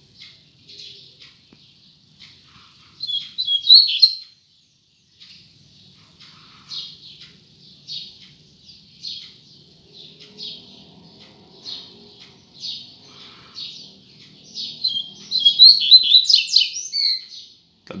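A male double-collared seedeater (coleiro) is singing in a cage. It gives soft short chips about once a second, with a louder burst of song about three seconds in and a longer one near the end. The song is delivered in short broken pieces, which keepers call 'picando o canto'.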